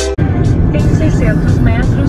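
Steady road and engine rumble heard from inside a moving car's cabin on a highway. It comes in with an abrupt cut just after the start.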